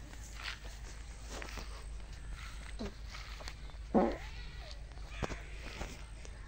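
A single short animal call about four seconds in, the loudest sound, among scattered light knocks and steps.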